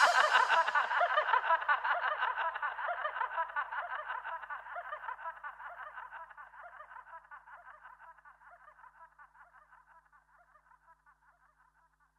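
Outro of an electronic dance remix: with the beat and bass dropped out, a rapid, fluttering mid-pitched sound is left and fades out over about ten seconds.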